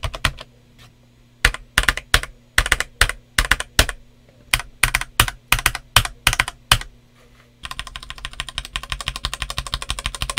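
Typing on a stock Redragon K596 Vishnu TKL mechanical keyboard with RD Red switches and OEM-profile PBT keycaps. A moment of typing and a short pause are followed by separate keystrokes at about two a second. After another brief pause, fast continuous typing begins past the middle.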